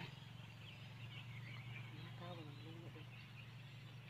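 Quiet outdoor background with a steady low hum, and a faint, brief wavering call about two seconds in.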